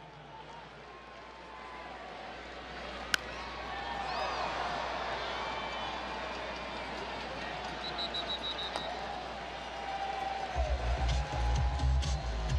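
A single sharp crack of a baseball bat hitting the ball about three seconds in, then the ballpark crowd noise swells as the fly ball carries to the outfield, with scattered shouts. Music with a heavy bass beat comes in near the end.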